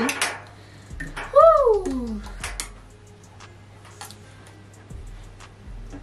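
Drink bottles and straws being handled on a table: light scattered clicks and taps of plastic and glass. About a second and a half in, one short pitched sound rises and then falls.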